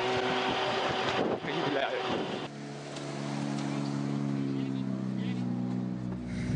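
Ford Fiesta RS WRC rally car: loud in-cabin engine and road noise while driving, then, after a sudden change about two and a half seconds in, a steady engine hum from the car sitting stopped and idling.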